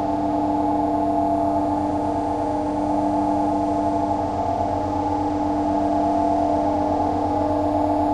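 Ambient electronic drone music: several sustained, unchanging tones layered over a low, fluttering hum, with no beat.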